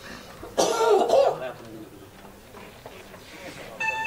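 A single cough in the hall, about half a second in. Just before the end a steady electronic chime tone sets in, the signal that the electronic vote has closed.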